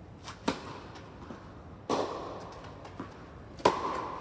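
Tennis ball struck by rackets, a serve and then rally shots: three sharp pops about one and a half seconds apart, each ringing on in the indoor court hall, with fainter taps between them.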